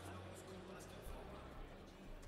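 Faint indoor sports-hall background: distant voices murmuring under the tail of the hall music, which fades out in the first second.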